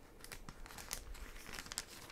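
Paper rustling and crinkling as sheets are handled, with a run of short crisp crackles, the sharpest about halfway through and near the end.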